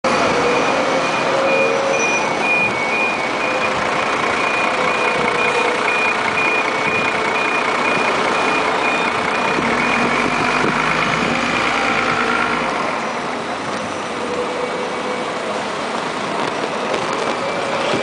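Busy street traffic, with buses and other vehicles running close by. A rapid, evenly pulsed electronic beep, like a vehicle's warning or reversing alarm, sounds over the traffic for about the first ten seconds, then stops.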